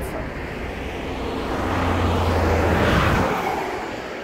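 A road vehicle passing close by: a broad engine and tyre noise with a low rumble underneath, swelling to its loudest about three seconds in and then fading away.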